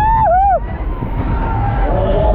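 A rider's high two-part whooping yell that rises and falls, ending about half a second in, over the steady low rumble of the moving fairground ride.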